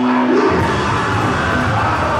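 Live rock band playing loud: a held note gives way about half a second in to the full band with bass and drums.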